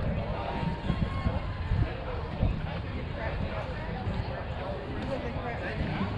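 Indistinct voices of players talking and calling out across a softball field, over a steady low rumble.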